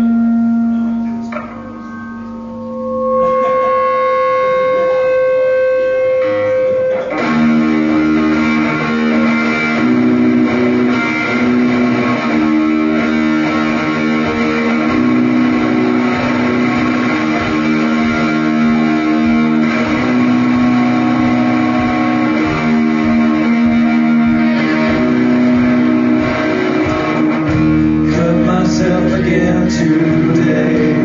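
Live band playing the intro of a rock song on electric guitars: a few long held notes at first, then about seven seconds in the full band comes in with a steady beat.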